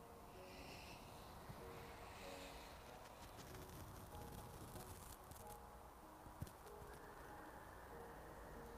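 Near silence: faint room tone, with one small click about six and a half seconds in.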